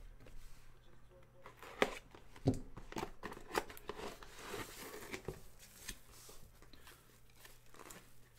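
Cardboard box and foam wrapping being handled and opened by hand: faint, irregular crinkling and rustling with a few light taps, the sharpest about two seconds in.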